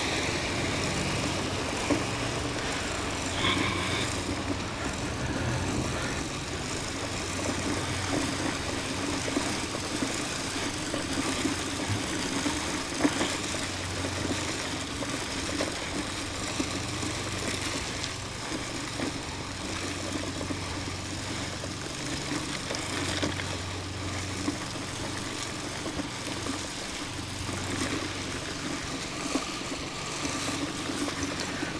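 Push-type broadcast fertilizer spreader being wheeled across grass: its wheels and gear-driven spinner give a steady whirring rattle as it throws out granular fertilizer, with a few small clicks along the way.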